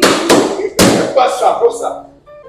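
Rubber party balloons being burst by hand: two sharp bangs, the second just under a second after the first.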